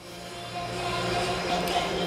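Background music of steady sustained tones, rising in level over about the first second, then holding.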